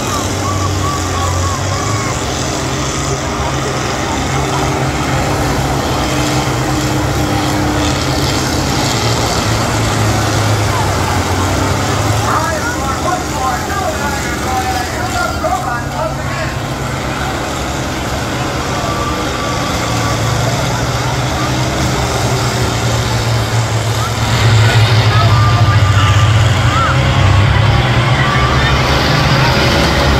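Diesel engines of several large combine harvesters running hard under load, with a steady low drone that gets louder about 24 seconds in.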